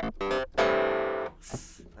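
The OXE FM Synth software synthesizer plays its Clavinet III clavinet preset. A few short, clipped notes are followed about half a second in by one held note lasting under a second, then another short note near the end.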